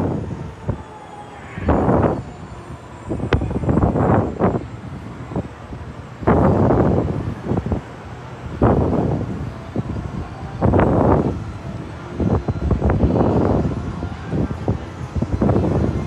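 Wind buffeting the microphone on a reverse-bungee ride capsule as it bounces up and down on its cords, in rushes about every two seconds.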